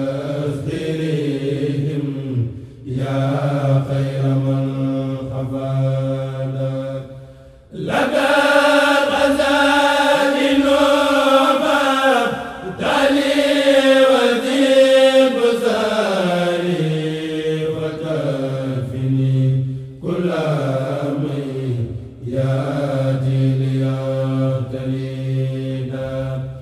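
Male kourel choir chanting a Mouride khassida in Arabic into microphones, several voices together in long drawn-out sung phrases with short breaks between them.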